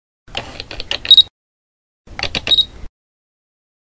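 Mechanical camera-lens sound effect: clicking and ratcheting in two bursts about a second long, the first ending in its loudest click with a short metallic ring.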